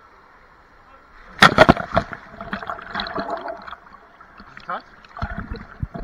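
A person jumping from a rock ledge into a pool: a loud splash about a second and a half in, then voices and water sloshing close by, over the steady rush of a waterfall.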